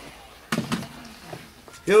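A plastic heat gun set down on a wooden workbench, a sharp knock about half a second in, followed by a few light handling clicks.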